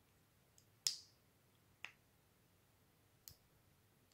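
A few short, sharp clicks of buttons being pressed on a CI Control handlebar remote, four in all spread over a few seconds, the one just before a second in the loudest.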